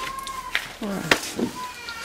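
A cat meowing, a thin drawn-out call at the start and a shorter one near the end, over a woman's speech.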